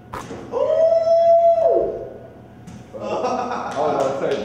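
A sharp knock, then a person's drawn-out vocal cry held on one pitch for a little over a second and dropping off at the end, followed by people talking.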